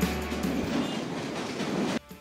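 Train running on a riveted steel elevated track overhead, a dense, steady noise without tones. Music fades out under it about half a second in.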